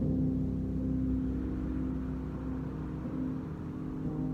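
Piano playing a held chord low in the middle register, its notes left ringing and slowly fading.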